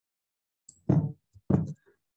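Two sharp knocks, the first about a second in and the second half a second later.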